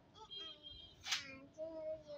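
Soft, faint singing voice between sung lines of a children's rhyme, with one short sharp click about a second in.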